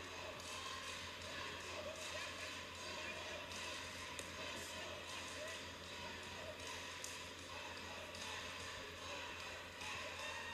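Quiet cage-side arena sound: a steady low hum under faint distant voices, with a few light taps now and then.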